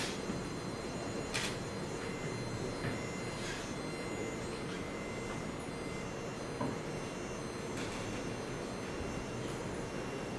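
Steady lecture-hall background noise, a constant hiss with faint steady tones, broken by a few faint clicks a couple of seconds apart.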